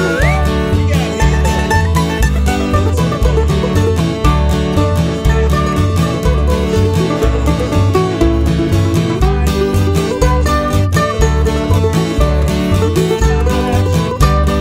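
Instrumental break of an upbeat country-style song: plucked string instruments picking over a steady, pulsing bass beat, with no singing.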